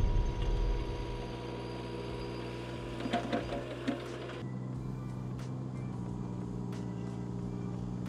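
Mini excavator's diesel engine running steadily, a low even hum. A louder sound fades out in the first second. About four seconds in the sound changes at a cut, losing its upper hiss while the low engine hum continues.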